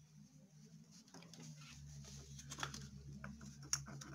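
Faint tapping and rustling of baking soda being tipped from a plastic tub into a plastic bottle's neck, the taps growing more frequent near the end, over a low steady hum.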